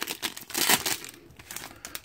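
Trading card pack wrapper crinkling and tearing as it is opened by hand, in a cluster of irregular crackles that is busiest in the first second and thins out after.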